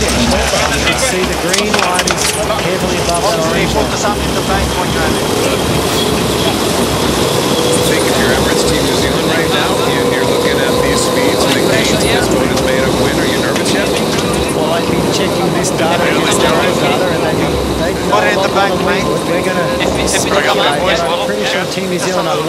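Onboard sound of an AC75 foiling racing yacht at speed: a steady rush of wind and water with a continuous humming tone, and crew voices talking over it.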